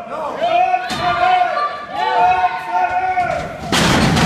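Spectators shouting and yelling, with a loud slam about three and a half seconds in as a wrestler's body hits the ring mat.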